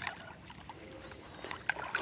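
A hooked bass splashing quietly at the water's surface as it is drawn in to the bank, with a few small splashes and water sloshing.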